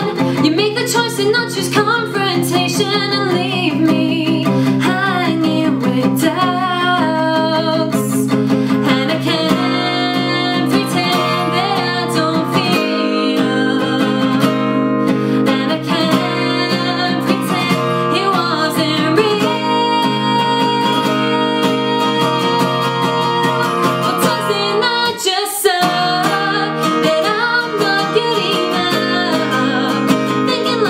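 A woman singing a pop-rock song while strumming an acoustic guitar with a capo on the neck.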